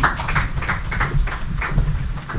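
A small group applauding, with the individual hand claps standing out separately.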